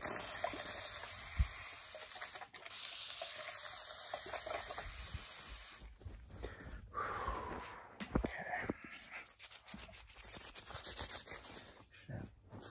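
Spray bottle misting the air: a steady hiss of fine spray for about the first half, then shorter, broken sprays.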